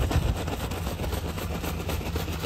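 Paper feed bag being crumpled and rustled in the hands, a dense run of rapid crackles, over a steady low rumble.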